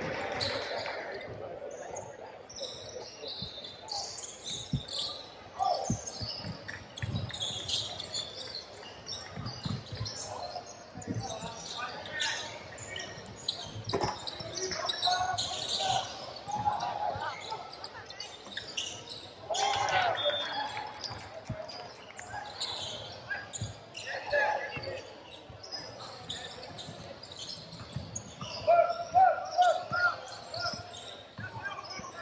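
Basketball being dribbled on a hardwood court, with repeated bounces, short high sneaker squeaks and players' shouts, loudest near the end.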